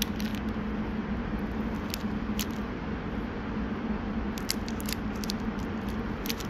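Metal spoon digging into and prying apart a soft, warm cookie in its plastic wrapper, heard as a few sharp little clicks and crinkles, with a cluster near the end. Under it runs a steady low hum.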